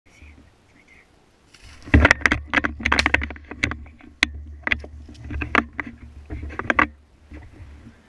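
Handling noise on a body-worn action camera: rapid, irregular clicks and knocks over a low rumble. It starts about two seconds in and stops near the seventh second.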